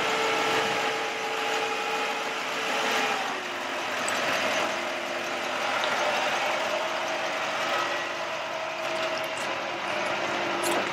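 A bucket truck running with its PTO engaged, its hydraulic system giving off a steady whine over the engine. About three seconds in, the whine drops in pitch and settles at a new steady note, as with a change in hydraulic load.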